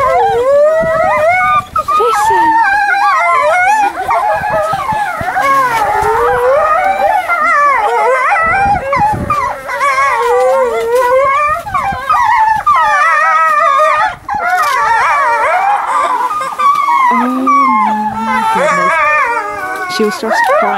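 Grey wolves howling in chorus: many overlapping howls that rise and fall in pitch and run on without a break. The pack is answering a keeper's call.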